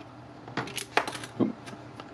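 A few small sharp clicks and rattles: the fuse drawer of an amplifier's IEC mains inlet being pried open with a thin metal tool to get at the mains fuse.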